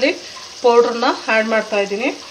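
A woman talking in two short runs over a faint steady sizzle of mango pickle mixture frying in oil in a kadai.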